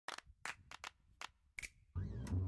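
About seven short, sharp clicks or taps at uneven intervals, faint, with quiet between them; one near the end carries a brief ringing tone.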